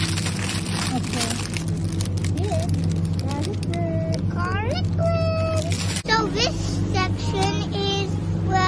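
A child's voice, its pitch rising and falling, that cannot be made out as words, over a steady low hum. In the first three seconds there are clicks and rustling, as of plastic packaging being handled.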